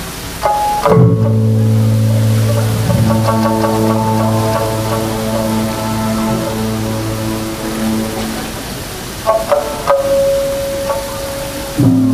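Electronic keyboard playing slow, long-held chords, with new notes sounding about a second in and again near the end, over the steady rush of a river.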